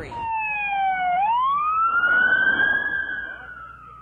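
Emergency vehicle siren wailing. It falls for about a second, then swings up into one long, slow rise and fall.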